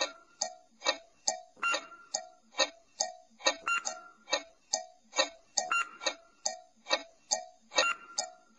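Clock-ticking countdown sound effect: short ringing ticks at an even pace, about two and a half a second.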